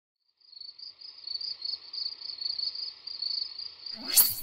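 Crickets chirping in a steady, high, pulsing trill that fades in about half a second in.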